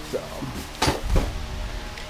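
A plastic shopping bag and boxed spark plugs being handled, with a couple of sharp clacks about a second in as the packages knock together.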